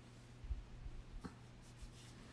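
Faint handling noise from a phone being held and touched: a few soft low bumps, a brief click about a second in and light rubbing.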